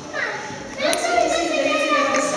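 A small child's voice babbling and calling out, quieter at first and then louder from about a second in.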